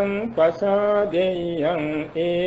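Male Buddhist monk chanting Pali verses slowly, each syllable drawn out on a steady pitch, with short breaks and small glides between the held notes.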